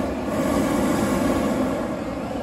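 Hot air balloon's propane burner firing: a loud, steady roar.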